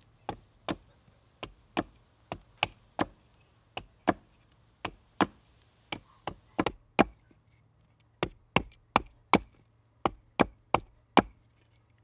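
Bushcraft axe chopping the end of a small stick held upright on a wooden chopping block, shaping a wooden splitting wedge. It is a steady run of sharp wooden chops, about two to three a second, with a pause of about a second just past halfway.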